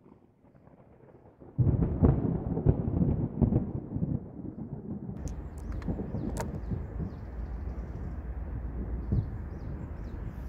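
A deep rumble starts suddenly about a second and a half in, loudest over the next three seconds, with several sharp knocks in it. It then settles into a steadier, quieter low rumble with a few clicks.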